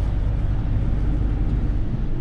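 Minibus driving on the road, heard from inside its cabin: a steady low rumble of engine and tyre noise.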